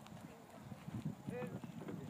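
Hoofbeats of a pony cantering on a sand arena surface, growing louder in the second half as it comes nearer.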